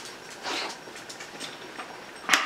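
A soft sip of beer from a pint glass about half a second in, over faint room noise.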